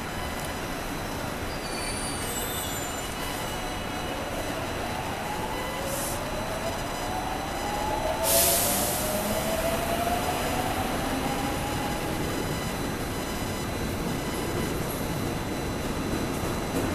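Seoul Subway Line 1 electric train pulling out of the station. Its motors give a set of rising whines as it picks up speed, over the steady running noise of the wheels on the rails. A short, loud hiss comes about eight seconds in.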